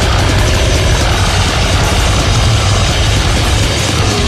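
Harsh distorted noise from a goregrind/grindcore recording: a dense, steady wall of sound over a low rumble, with the drumbeat dropped out.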